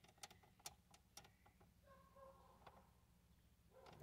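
Near silence: room tone in a car cabin, with a few faint clicks in the first second.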